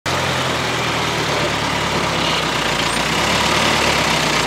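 Diesel engine of a Hydra mobile crane running steadily while it lifts slung logs.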